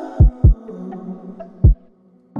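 Instrumental passage of an indie pop song: three deep bass drum thumps, two in quick succession and then a third, over fading sustained keyboard chords. The music drops out briefly near the end.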